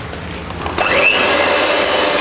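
Electric hand mixer beating butter icing in a glass bowl; its motor winds up with a rising whine about three-quarters of a second in, then runs steadily.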